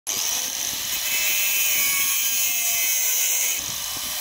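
Angle grinder with a cutting disc cutting through a steel pipe: a steady high-pitched whine with a hiss of grinding, easing slightly just before the end.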